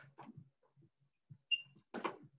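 Faint taps of a soccer ball being touched and skipped with the feet, with light footsteps on a hard floor, and one short high squeak about one and a half seconds in.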